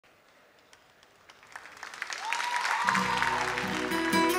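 Audience applause swelling up out of near silence, then the song's instrumental intro entering with sustained notes and a low bass about three seconds in.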